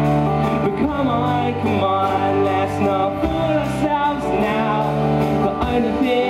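Live rock band performing a song: a male voice singing over guitars and held low bass notes, played loud and without a break.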